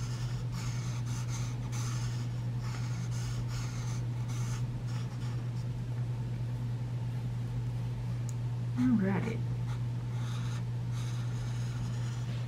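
Alcohol marker nib strokes scratching over paper, one short stroke after another while coloring. A steady low hum runs under them, and a brief voiced sound comes about nine seconds in.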